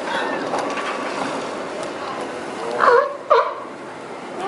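California sea lions barking twice near the end, two short loud calls about half a second apart. Under them is a steady wash of splashing pool water and the voices of people around the pool.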